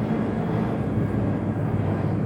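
Steady low background noise, a constant hum with no distinct events.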